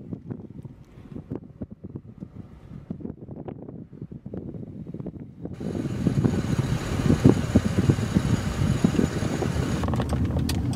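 Car cabin noise while driving. At first there is a low road rumble with small scattered knocks. About halfway through, it jumps abruptly to much louder, steady wind and road noise with a hiss, as if buffeting the microphone.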